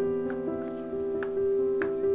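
Background piano music, with notes struck at an unhurried pace.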